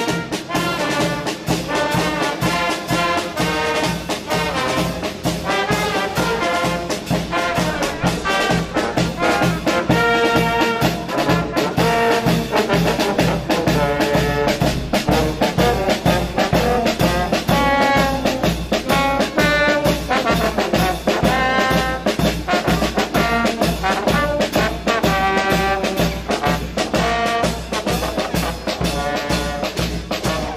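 Small street brass band with trumpets, trombones, tuba and a marching drum, playing an upbeat tune over a steady drum beat.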